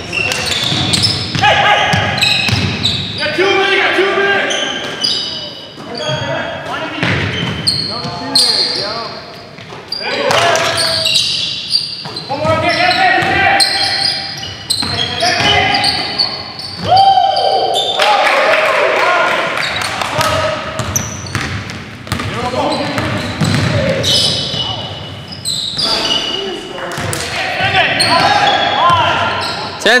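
Basketball game in a large gym: the ball bouncing on the hardwood floor, short sharp impacts and squeaks, and players' voices calling out, all echoing in the hall.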